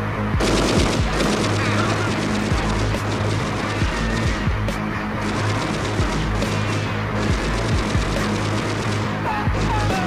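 Long, rapid bursts of movie machine-gun fire over loud, bass-heavy music. The firing starts just after the beginning and continues throughout.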